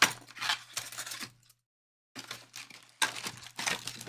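Cardboard trading-card mega box being torn open and its foil card packs handled, tearing and crinkling. It comes in two bouts, the first with a sharp rip at the start and lasting about a second and a half, the second starting about two seconds in.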